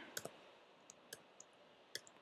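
Faint keystrokes on a computer keyboard: a handful of short, separate key clicks spread over two seconds.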